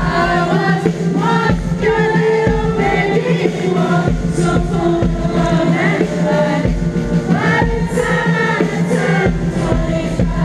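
Live pop-rock band playing with a male lead vocal sung over drums, bass and electric guitar, with a steady drum beat.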